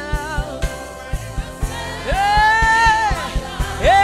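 Live gospel worship music: voices singing with backing singers over a steady drum beat, with one long sung note held for about a second midway through.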